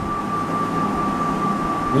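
Steady background noise, an even rushing haze with a thin, high, steady whine running through it.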